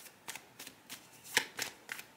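Tarot cards being shuffled by hand: an irregular run of sharp card snaps, about four a second, the loudest about one and a half seconds in.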